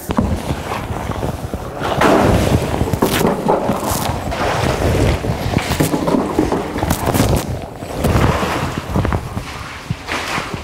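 Sloshing and splashing of FAM disinfectant as a plastic jug is dipped into a bin and the liquid is poured over a rubber boot, with irregular knocks and thuds throughout.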